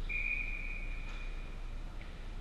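Referee's whistle at an ice hockey game: one long, steady high blast that fades out near the end, with a faint click about a second in.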